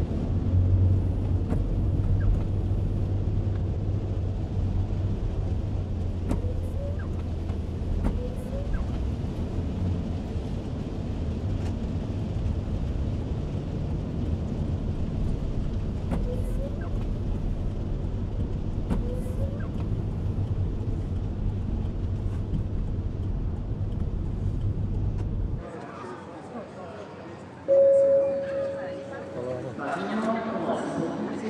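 Inside a Mercedes-Benz car driving in the rain: a steady low rumble of engine and tyres on the wet road with a hiss above it. Near the end this cuts off suddenly, giving way to a quieter hall with voices and one short loud beep.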